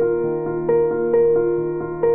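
Slow, gentle piano music: single notes struck about twice a second over a held low note.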